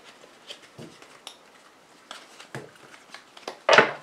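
A tarot deck being handled: faint scattered clicks and soft rustles of the cards, then a short, louder rustle near the end.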